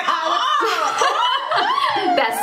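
Women laughing, in short chuckles and snickers.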